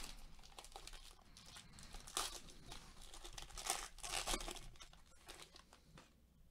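Wrapper of a trading-card pack crinkling and tearing as it is peeled open by hand and pulled off the cards. Louder crackles come about two seconds in and again around three and a half and four seconds.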